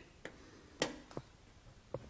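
Quiet room tone with four faint, short sharp clicks spread across two seconds.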